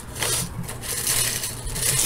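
Irregular rustling and scraping of a cardboard snack box and its paper contents being handled.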